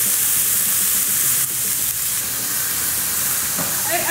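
Diced onion, celery and bell pepper sizzling in hot butter in a stainless steel skillet as they are stirred, just after going into the pan. A steady, bright hiss.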